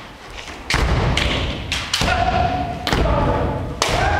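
Kendo exchange: about five sharp cracks and heavy thumps as bamboo shinai strike and the fencers stamp on the wooden floor, with drawn-out kiai shouts between the strikes in a reverberant hall.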